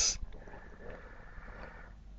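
The clipped end of a spoken word, then a pause holding only faint background noise.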